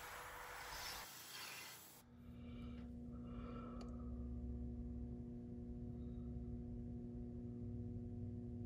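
A faint steady hiss for about two seconds, then soft background music of held, sustained tones fades in and carries on quietly.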